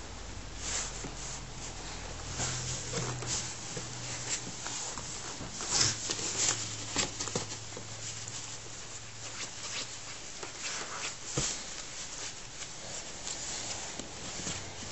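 Ferrets scrambling in a cardboard box among fabric and a pop-up tent: scattered rustles, scratches and light knocks, loudest about six seconds in.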